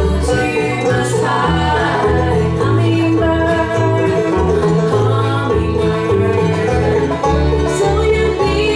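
Bluegrass band playing live: fiddle, banjo, acoustic guitar and upright bass, with the bass moving note to note under the melody.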